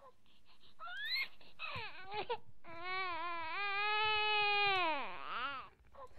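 A baby crying in wails: a short rising cry about a second in, then a long drawn-out wail from about three to five seconds that drops in pitch as it ends.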